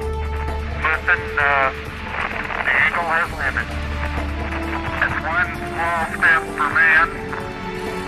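Garbled, unintelligible radio voices in short warbling bursts, laid over a music score of sustained notes and a low drone.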